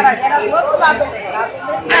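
Several people talking at once, overlapping conversational chatter with no single clear voice.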